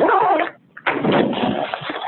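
A person's wordless vocal sounds: a short sound gliding in pitch, a brief pause, then a longer mumbled sound.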